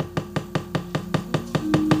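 Fast, even wooden knocking, about eight knocks a second, typical of a wayang kulit dalang's cempala striking the wooden puppet chest (dodogan). Soft, steady gamelan tones are held beneath the knocking, and a new tone enters near the end.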